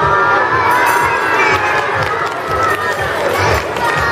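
Audience of children shouting and cheering together, a dense, steady din of many voices.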